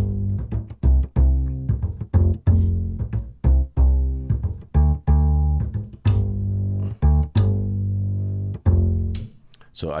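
Sampled acoustic double bass from UJAM's Virtual Bassist Mellow plugin, playing a plucked jazzy bass line on G major chords at about one to two notes a second. It stops about a second before the end.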